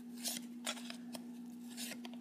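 Yu-Gi-Oh! trading cards sliding against each other as a stack is flipped through by hand, making four short swishes about half a second apart.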